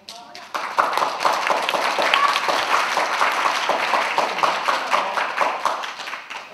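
Audience applauding, a dense crackle of many hands clapping that starts about half a second in and keeps going at an even level.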